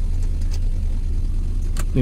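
Maruti Suzuki Alto's three-cylinder petrol engine idling steadily, heard from inside the cabin. It is running on its alternator alone, with the battery terminal disconnected. A single sharp click near the end is the interior dome-light switch being pressed.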